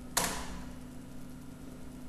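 A single sharp keystroke on a computer keyboard about a fifth of a second in, then a low steady electrical hum.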